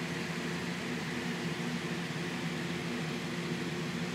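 A steady low mechanical hum over a faint hiss, the even background of a running appliance in a small room.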